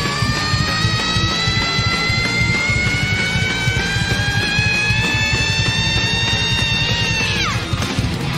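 Live heavy metal band playing: drums pound underneath while one long, high held note from the lead singer rises slowly in pitch and then falls away sharply near the end.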